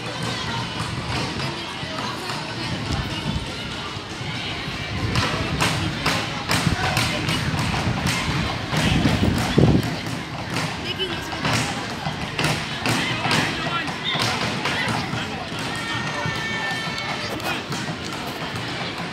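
Players' and onlookers' voices calling out indistinctly during a football game, with a run of sharp knocks and thumps through the middle.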